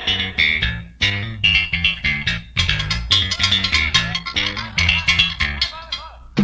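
A live band plays instrumentally: an electric bass line with an electric guitar picking a quick riff of short notes, amplified through the sound system of a trio elétrico truck.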